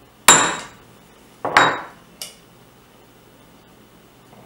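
Small hammer striking a steel center punch to peen the base of a reproduction front sight blade, spreading the metal so it fits snugly in the sight block. One sharp blow with a brief metallic ring, then a quick double blow about a second later and a light tap.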